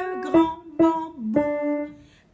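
A voice singing a slow children's-song melody with an instrument sounding the notes along with it, a new note about every half second; it fades out near the end.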